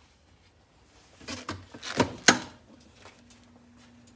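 Clamshell heat press being shut on a shirt: a soft rustle of the cover paper, then two sharp clacks about two seconds in as the upper platen is pulled down and locks. A faint steady hum follows near the end.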